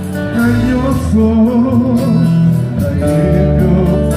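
A live gospel worship band playing: a man sings lead with backing singers over acoustic and electric guitars and drums, keeping a steady beat.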